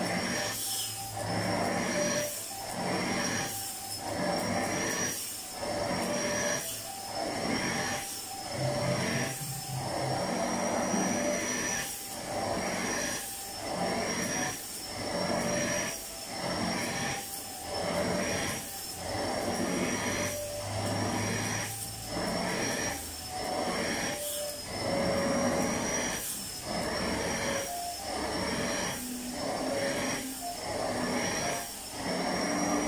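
Vacuum cleaner running with a high motor whine, its nozzle drawn back and forth over fabric sofa cushions. The suction noise surges and the whine wavers with each stroke, about once a second.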